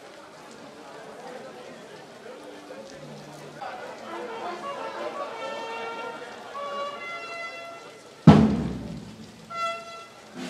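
Military brass band (trumpets, trombones, sousaphones) sounding a few sustained notes that step between pitches over a murmur of voices. About eight seconds in comes a single loud percussion strike that dies away, then a short brass note near the end.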